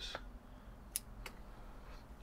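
Two short, faint clicks of scissors snipping the leaves off a young desert rose (Adenium arabicum) seedling, about a second in and a quarter of a second apart.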